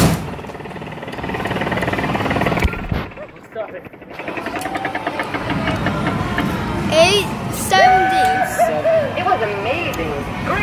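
Arcade game-machine sounds: a steady din of electronic effects and background chatter, with warbling, gliding electronic jingles about seven seconds in. A single sharp hit sounds at the very start, where the boxing machine's bag has just been punched.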